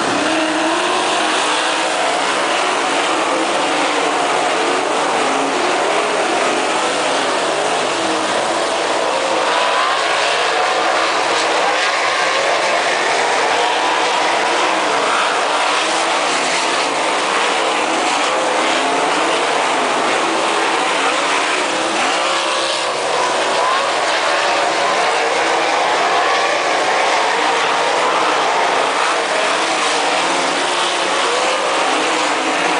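A pack of 360 winged sprint cars racing, their V8 engines loud and continuous. Many engine notes overlap, rising and falling as the cars get on and off the throttle and pass by.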